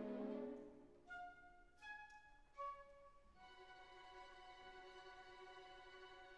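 A quiet passage of slow music: a full sustained chord fades out within the first second, then soft single notes follow one at a time, the last held long and steady.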